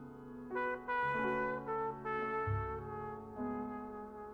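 Solo trumpet playing a slow melodic phrase of held notes that move from one to the next every half second or so. A low bass note sounds underneath from about two and a half seconds in.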